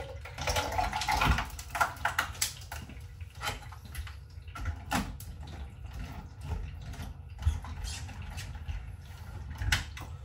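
A drink being made up at a kitchen counter: liquid running into a plastic bottle for the first couple of seconds, then scattered clicks and knocks of plastic lids and containers being handled. A steady low hum runs underneath.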